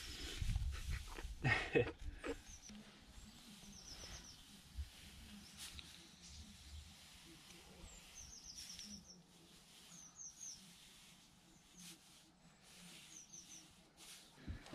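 A small bird calling faintly: short quick runs of three to five high chirps, repeated every few seconds. A man laughs briefly about two seconds in.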